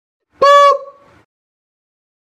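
A single short, loud honk: one steady high-pitched tone lasting about a third of a second, with a faint tail that fades out about a second in.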